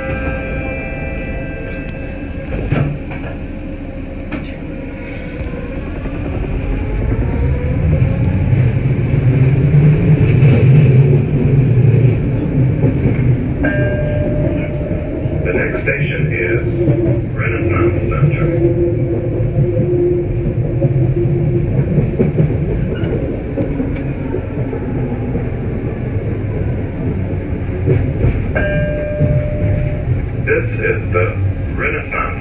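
Detroit People Mover car running on its elevated guideway. Its motor whine rises and the wheel rumble builds as it pulls away, louder for a few seconds before settling into steady running. Short tonal chime-like sounds come about halfway through and again near the end as it nears the next station.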